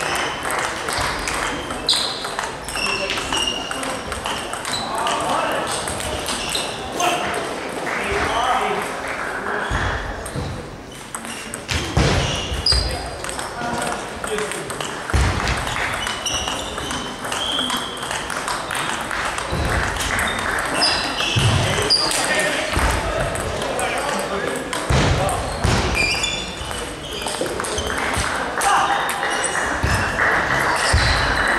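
Table tennis ball clicking off bats and table during play in a large hall, with short high pings at irregular intervals. Indistinct voices run through it.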